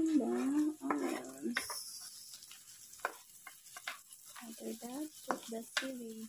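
Chopped onions tipped into garlic and ginger frying in butter in a wok set off a hiss of sizzling about a second and a half in, followed by a wooden spatula clicking and scraping against the wok as it is stirred. Background music plays at the start and again near the end.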